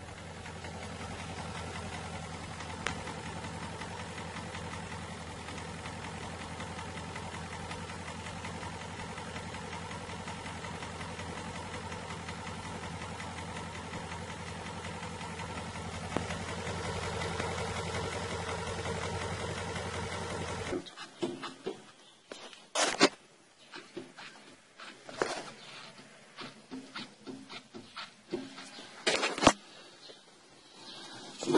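An engine running at a steady idle with an even hum. About twenty seconds in, the sound cuts off suddenly, leaving a quieter stretch with scattered sharp knocks.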